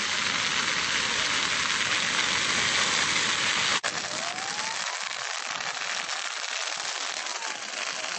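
Wheat field burning: a dense crackling hiss of fire. A cut about four seconds in drops it to quieter crackling, with a few faint rising tones over it.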